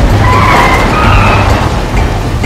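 Tyre screech sound effect of a car skidding: a wavering squeal lasting about a second and a half, over background music.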